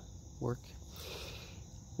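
Steady high-pitched insect chorus in the background, with a brief soft rustle about a second in.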